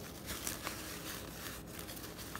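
Faint rustling of tissue paper and a cloth pouch being handled, with a few soft crinkles in the first second.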